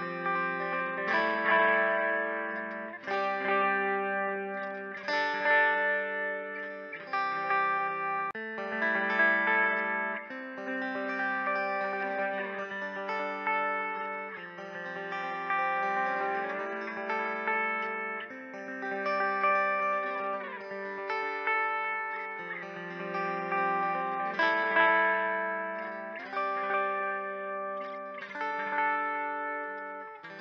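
Skervesen electric guitar played through effects, ringing chords that change about every two seconds, with a few sliding notes in the middle.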